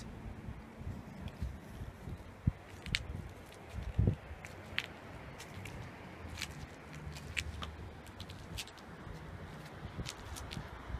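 Light footsteps scuffing and clicking on bare granite, irregular and scattered, over a low steady rumble.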